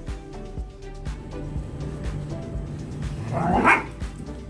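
Background music with steady held tones, and a dog giving one short rising bark-like call near the end.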